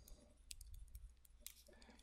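Near silence, with a few faint, short clicks of a stylus on a pen tablet during digital handwriting, the clearest about half a second in and near a second and a half.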